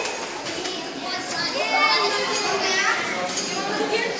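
Indistinct chatter of many children's voices in a large, echoing hall.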